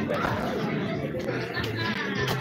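Indistinct talking and chatter of voices, with no clear words.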